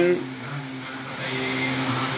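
A pause in a man's speech, the end of his last word just at the start, leaving a steady low background hum with faint hiss.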